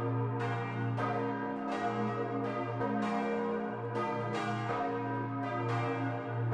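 Peal of large bronze church bells cast by Cavadini of Verona in 1931, four bells swinging and ringing together in the tower. Strikes come every half second to a second and overlap over a steady, deep hum.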